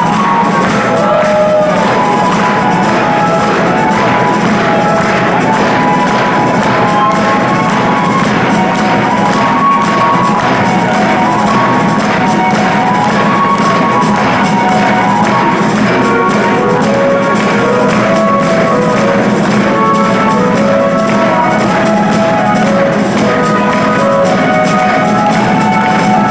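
Live progressive rock band playing: a flute carries a stepwise melody over sustained keyboard chords and a steady, even drum rhythm, with hall reverberation.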